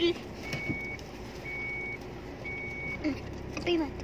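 Three evenly spaced electronic beeps, one a second, each a steady high tone about half a second long, over a low vehicle hum.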